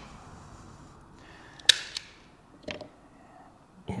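Knipex PreciStrip automatic wire stripper snapping through a conductor's XLPE insulation: one sharp click a bit under two seconds in, then a few fainter clicks.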